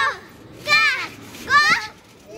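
A young girl's voice: two short, high-pitched squeals, about half a second in and again near the end.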